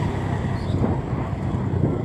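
Steady low rumble of a vehicle's engine and road noise, heard from on board the moving vehicle.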